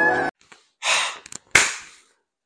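Instrumental intro music cuts off just after the start, followed by a man's two loud, breathy exhaled "haaa" sounds, the second starting sharply and trailing off.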